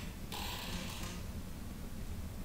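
Room tone in a hall between phrases of speech: a steady low hum, with a brief soft hiss about a third of a second in.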